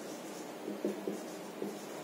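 Marker pen writing on a whiteboard: faint, uneven strokes of the tip across the board as a word is written, with a few short scratches around the middle.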